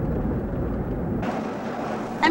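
Steady low rumble of vehicle or traffic noise; about a second in the deep rumble drops away, leaving a lighter, hissier noise.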